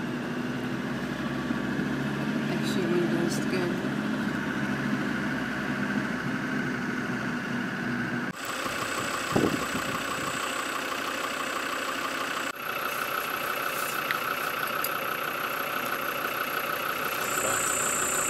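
Old Land Rover's engine running as it drives slowly along a sandy track, heard from inside the vehicle. About eight seconds in the sound cuts abruptly to steady high-pitched droning, with a single thump about a second later.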